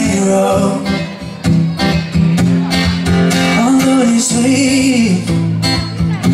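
Live acoustic duo: a steel-string acoustic guitar strummed with a cajon beating time under it and a man singing a melody line.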